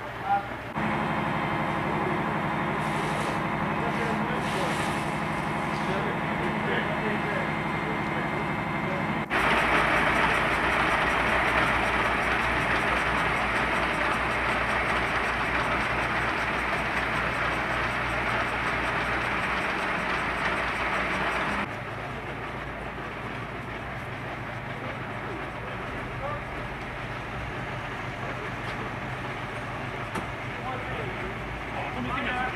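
Fire engines' motors running steadily at the fireground. The sound jumps twice, to a louder, noisier stretch about nine seconds in, then drops back to a lower, steady run about twenty-two seconds in.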